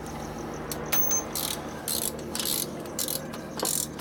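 Ratchet wrench clicking in short strokes, about two a second, as a bolt on the motorcycle engine's top end is worked, after a single sharp metal click.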